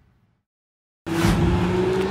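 A faint sound fades to dead silence. About halfway through, street traffic cuts in abruptly: a car driving past, with its engine hum and tyre noise.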